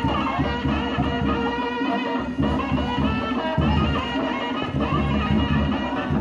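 Ghumar folk dance music: a high, wavering reed-like melody played over steady, dense drumming.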